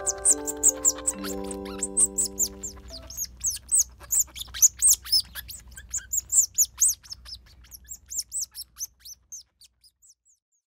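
Newborn otter pups squeaking while nursing: a dense run of short, very high chirps, several a second, overlapping one another and fading away near the end. Soft music with held notes plays under them for the first three seconds.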